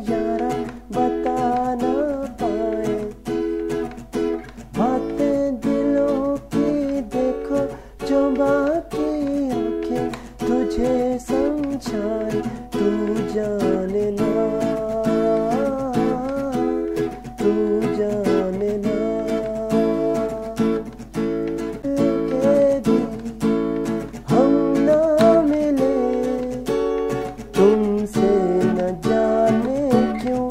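Acoustic guitar strummed continuously in a steady rhythmic down-and-up pattern, moving between chords.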